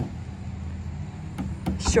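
Steady low hum of a motor vehicle engine running in the street, with a couple of light clicks near the end.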